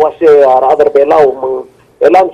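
Speech only: a man talking, with a short pause near the end.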